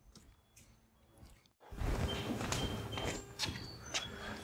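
Near silence for the first second and a half, then low room noise with footsteps and a few light knocks and clicks of someone moving about, over a faint steady hum.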